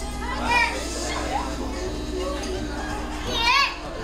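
A toddler's high-pitched squeals, two short cries with a wavering pitch, one about half a second in and a louder one near the end, over faint background music.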